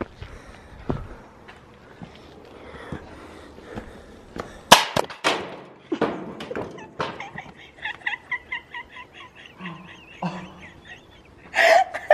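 Footsteps on dirt, then about five seconds in a loud thump followed by scraping knocks as someone stumbles and falls with the camera, then fits of rapid laughter.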